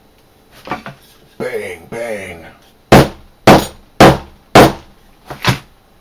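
Hammer blows setting a rivet in a leather sheath on a metal anvil: four sharp, ringing strikes about half a second apart, then a fifth slightly lighter one a little later.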